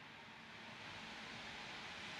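Quiet room tone: a faint, steady hiss with no distinct sound events.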